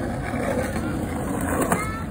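Steady low rumble of outdoor background noise, with a short rising pitched sound near the end.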